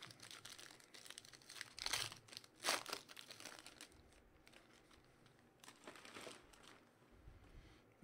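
Crinkling of a trading-card pack's foil and plastic wrapper as it is opened and the cards are pulled out. It comes in several short bursts, the loudest about two and three seconds in.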